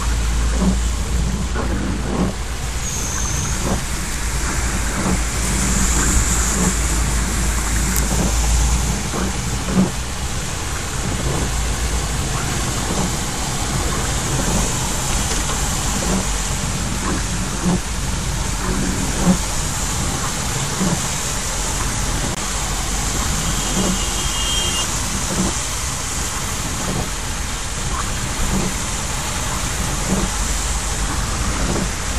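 Heavy rain beating on a car's roof and windscreen, heard from inside the moving car, over the car's engine and tyres on a waterlogged road. A deep rumble runs underneath for the first nine seconds or so and then drops away.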